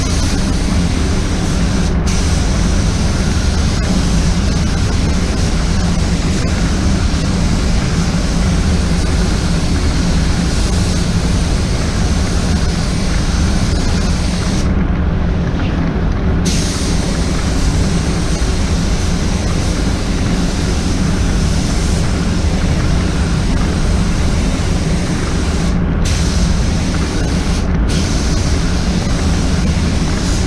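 Paint booth airflow running with a steady low rumble, under the air hiss of a spray gun applying paint. The hiss cuts out for about two seconds near the middle and briefly a few times near the end as the trigger is released.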